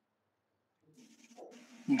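Near silence, then a faint steady hum and hiss about a second in as a call microphone opens, and near the end a man's voice loudly calling out a name.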